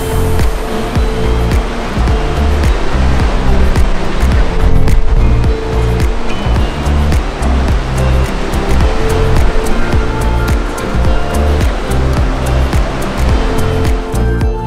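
Background music laid over a steady rush of churning sea water from a ship's propeller wake.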